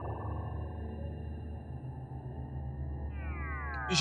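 Background film score: a sustained low synthesizer pad with a swelling note at the start, then a falling sweep near the end.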